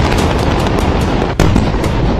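Loud, continuous rumble and crackle of explosions, with a fresh sudden blast about one and a half seconds in.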